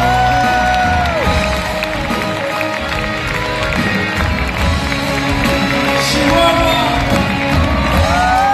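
A live rock band plays a ballad, heard from within the audience, with the crowd cheering over it. A long held sung note ends about a second in, and a new sung phrase begins near the end.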